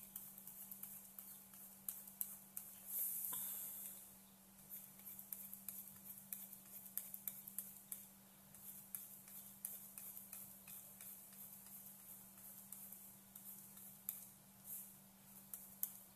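Faint, irregular light taps and clicks of a stylus on a drawing tablet, over a steady low hum.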